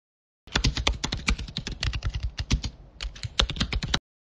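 Computer keyboard typing sound effect: a fast run of key clicks starting about half a second in, with a brief pause a little before three seconds in, then a further run of clicks.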